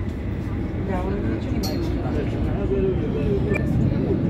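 Metro train running between stations, heard from inside the passenger car as a steady low rumble. Someone coughs at the start, and passengers' voices are heard over it.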